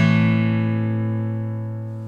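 Acoustic guitar's final strummed chord ringing out, its steady notes fading slowly without a new strum.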